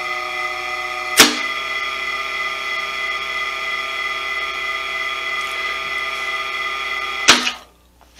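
Small three-phase induction motor running on single-phase supply through a star-delta starter, with a steady electrical hum and whine. About a second in, a contactor clacks as the timer switches the motor from star to delta. Near the end another clack cuts the power and the hum stops quickly.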